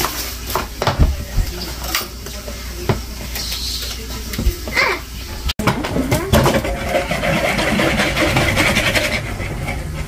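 Kitchen clatter: scattered knocks and scraping at a mixing bowl, then, after an abrupt cut about five and a half seconds in, a steady rattling of plastic containers, glass jars and dishes being handled in a cupboard.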